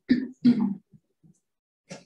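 A man clearing his throat: two short rasps in quick succession, followed by a faint breath near the end.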